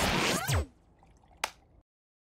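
Cartoon sci-fi portal sound effect: a loud noisy swish with several pitches sliding downward, dying away within the first second, then one short sharp burst about a second and a half in before the sound cuts off.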